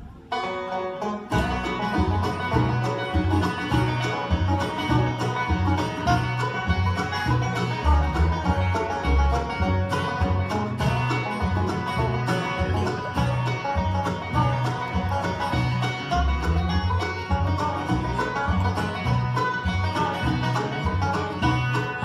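Live bluegrass band playing an instrumental opening, with banjo out front over acoustic guitar and upright bass. The music starts right away, and the bass comes in about a second later.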